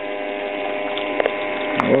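Small electric water pump feeding a finishing sluice, running with a steady hum, with water washing over the sluice. A few light clicks come in the second half.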